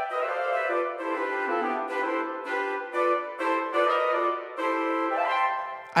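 Sampled orchestral flutes and clarinets play an agile melody in four-note closed-voicing chords. The parts move together from note to note in short phrases. The harmony comes from a single played melody line, transposed into chords locked to a scale.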